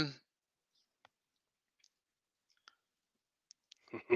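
Near silence broken by a few faint, short clicks, about four of them spread through the pause.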